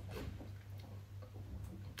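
Quiet room tone: a steady low hum with a faint hiss and a few faint ticks.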